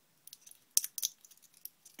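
Fingertips picking the dry inner pith out of a walnut half-shell: a scatter of small crackling clicks, the two sharpest a little under a second in.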